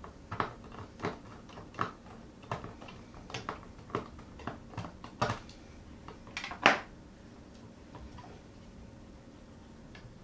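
Small screwdriver clicking and tapping against screws and metal parts inside an opened 2011 Mac Mini as a screw is worked loose. The light clicks are irregular, with the loudest near the end, and then give way to faint handling.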